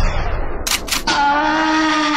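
Dance-mix music at a transition with the beat dropped out: a noisy whoosh, a couple of short sharp hits, then a held chord for the second half.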